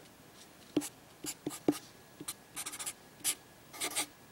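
Sharpie permanent marker writing on paper: a series of short, separate pen strokes as letters are drawn.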